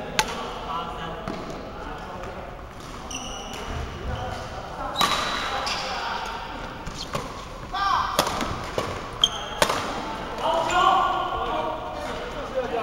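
Badminton rally: sharp racket strikes on the shuttlecock, single hits early and midway, then several in quick succession near the end, with short high squeaks of court shoes on the floor, echoing in a large hall.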